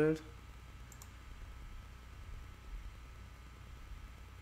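Computer mouse clicking: two quick, light clicks about a second in, over a faint low steady hum.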